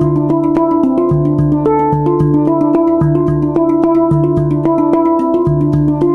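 A Hang, the Swiss-made steel handpan, played live with the fingertips: quick strikes on its tone fields ring on and overlap in a melodic pattern, over a low note that keeps coming back.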